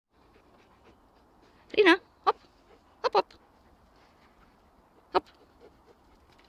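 A dog giving a few short, high whines or yips, the first the longest and wavering in pitch, then four brief ones spread over the next few seconds.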